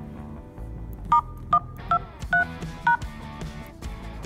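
Five short DTMF keypad tones from a smartphone softphone as a log-in code starting *123 is dialled, evenly spaced over about two seconds, over background music.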